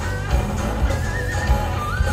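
Live hard-rock band playing with full drums and bass, while an electric guitar plays high notes that waver and bend up and back down.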